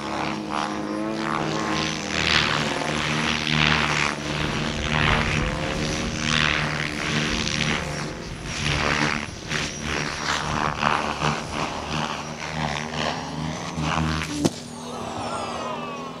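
Radio-control model aircraft flying low: a steady engine and rotor drone with rising and falling surges as the models pass. About fourteen and a half seconds in there is a sharp bang, and the drone drops away.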